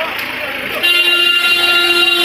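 A vehicle horn sounds about a second in and is held steadily as one long note, over street traffic noise. A person's voice is heard briefly before it.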